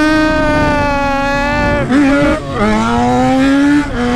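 Yamaha XJ6's 600 cc inline-four engine held at high revs under full throttle as the bike lifts its front wheel on power alone. It shifts up about two and a half seconds in, with a brief dip and drop in pitch, then revs climb steadily until another shift near the end.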